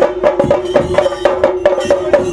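Fast, loud stick drumming on chenda drums, the traditional percussion of a theyyam ritual, in rapid sharp strikes over a steady held tone.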